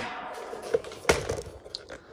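Footsteps in flip-flops on a concrete floor: a few light slaps, the loudest about a second in.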